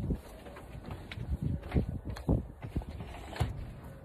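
A person breathing hard in short, irregular huffs and puffs around a mouthful of ice, in pain from a very hot sauce, mixed with soft knocks of the phone being handled.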